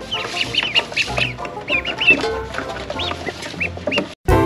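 Ducklings peeping: a stream of short, high chirps, several a second.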